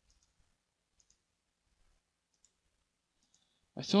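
A few faint computer mouse clicks over near silence, two of them in quick succession about a second in.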